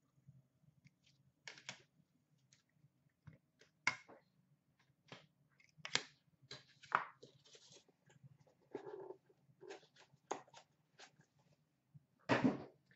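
Hands handling trading cards, plastic card cases and packaging: a faint string of short clicks, taps and rustles, the loudest about four, six and seven seconds in.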